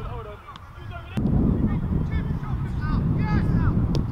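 Wind rumble on the microphone that grows louder about a second in, under a run of short, high, rising-and-falling calls. A sharp thud of a football being struck comes just before the end.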